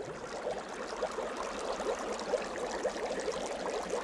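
Bubbling-water sound effect: a dense run of small bubbles rising and popping, heard as many quick little rising blips over a watery hiss.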